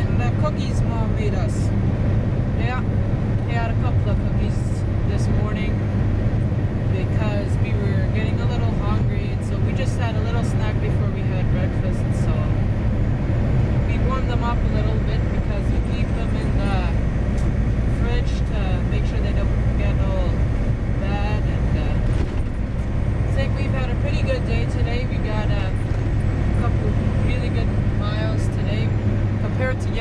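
Semi-truck diesel engine and road noise droning steadily inside the cab at highway speed, with a person's voice talking over it on and off.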